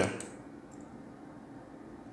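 A pause after a spoken phrase: the voice cuts off at the very start, leaving only a faint steady hiss of background noise.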